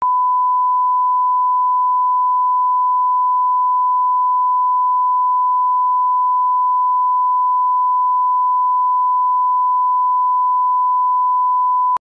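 A 1 kHz sine test tone: one pure, unbroken electronic beep that starts suddenly out of silence and holds at a constant level.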